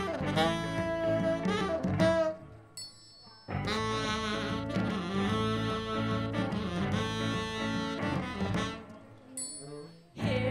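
Live band playing, with saxophone, electric guitars, bass and drums. The music drops away about two and a half seconds in, comes back suddenly about a second later, and thins out again near the end.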